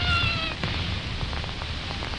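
A lull in a recording of Hausa traditional music: a held sung or fiddle note fades out about half a second in, leaving low background rumble with faint clicks.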